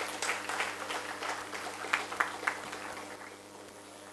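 Audience applauding, the clapping thinning out and fading away over about three seconds.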